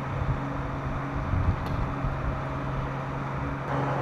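MRAP armoured vehicle's diesel engine idling steadily, with wind on the microphone.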